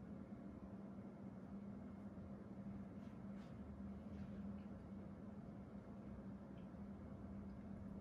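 Quiet room tone: a steady low hum over faint hiss, with a few faint ticks about three to four seconds in.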